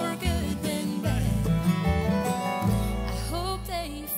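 Live bluegrass-style gospel song: a woman singing lead over strummed acoustic guitar and mandolin, with steady bass notes underneath.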